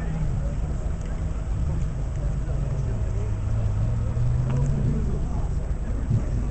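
KTM X-Bow's turbocharged four-cylinder engine idling, its pitch rising slightly about three to four seconds in and settling again near the end.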